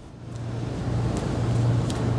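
A car driving past, its engine hum and tyre noise growing steadily louder as it approaches.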